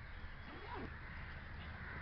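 Faint steady background noise with a brief, faint gliding call a little over half a second in.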